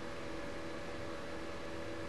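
Steady faint hiss with a low, even hum: the background noise of the recording, with no other sound.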